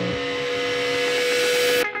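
A steady hum under a rush of noise that swells in loudness and climbs higher, then cuts off suddenly near the end.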